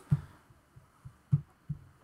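Four soft, low thumps at uneven intervals over quiet room tone; the first and third are the loudest.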